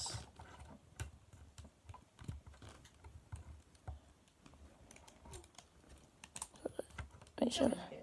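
Faint, irregular small clicks and ticks of plastic parts and joints on a Transformers Jazz action figure as it is handled and transformed, several clicks a second.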